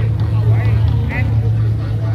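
A carnival sound-system truck puts out a loud, steady low rumble, with people's voices over it.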